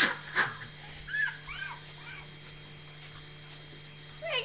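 A dog whimpering: a few short, high whines that rise and fall, about a second in, after some brief scuffling noises at the start.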